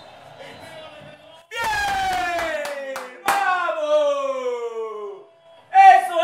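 A man's voice letting out long, drawn-out wordless cries, each sliding down in pitch: the first about a second and a half in, a second right after it, and a third starting near the end.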